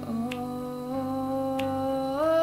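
A young woman's voice holding one long wordless sung note, stepping up slightly in pitch early on, over soft sustained low accompaniment, with two light clicks about a second apart.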